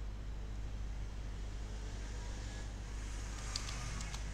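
Steady low electrical hum with an even hiss from the recording setup, with a few faint clicks near the end.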